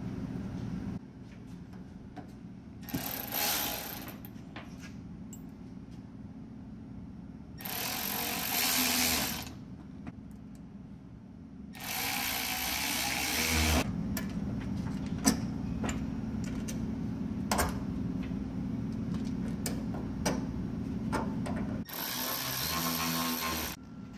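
Cordless electric ratchet running in four short bursts, each about one to two seconds long, driving down the bolts on the cap of a control arm's flex-end joint before they are torqued. A steady low hum runs underneath, with small clicks of hardware being handled between the bursts.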